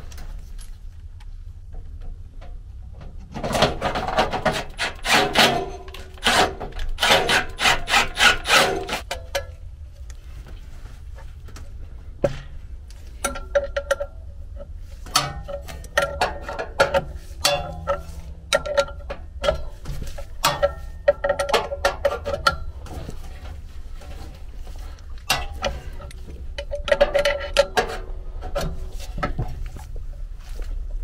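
Hand work on a sheet-metal squirrel-cage blower wheel and its hub: bursts of rapid metal clicking and scraping lasting several seconds each, with a ringing tone in places, over a steady low hum.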